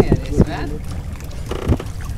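Water splashing as a dense crowd of fish thrashes at the surface, over a steady low rumble of wind on the microphone, with a short voice sound near the end.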